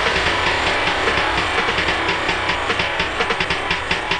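Intro of a hard house track: a dense, noisy build-up crossed by fast, evenly spaced percussive ticks that grow more distinct toward the end, with no kick drum yet.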